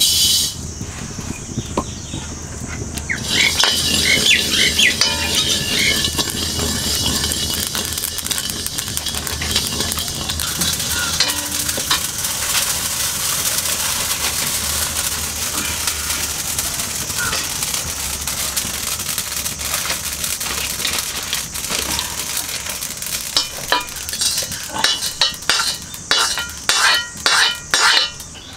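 Yellow mustard seeds pour into a hot black iron wok with a brief pattering rush, then toast with a steady crackling sizzle while being stirred. In the last few seconds a metal ladle scrapes and clinks against the wok as the seeds are scooped out.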